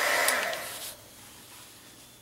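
Heat gun blowing hot air over melted crayon wax to set glitter into it, a steady rush of air that stops about a second in, leaving faint room hiss.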